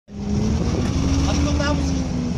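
BRDM-2 armoured scout car's GAZ-41 V8 petrol engine running at low revs with a steady drone as the vehicle creeps forward up the ramps onto a trailer.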